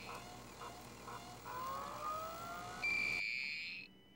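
Electronic sci-fi beeps and tones: a few soft short blips and two slowly rising tones, then a louder steady high-pitched tone held for about a second near the end, which cuts off suddenly.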